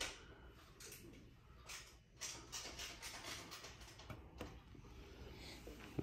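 Faint handling noise from a carbon fibre belly pan being held and turned by hand: scattered light clicks and rustles, with a quick run of small ticks in the middle.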